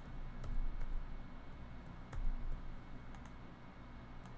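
A few scattered, sharp clicks of a computer mouse and keyboard as a web page is navigated, one near the start, two around two seconds in and a quick pair near the end, with a couple of soft low thumps on the desk in between.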